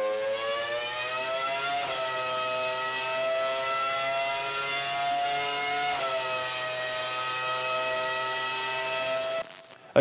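Honda Formula 1 V10 engine running at high revs, a high wailing note. Its pitch creeps upward and drops back sharply twice, about two and six seconds in, before the sound cuts off just before the end.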